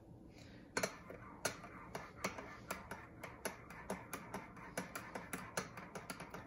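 Metal teaspoon stirring a porcelain cup of cappuccino, clinking lightly against the cup about three times a second from about a second in, as the whipped coffee cream is mixed into the hot milk.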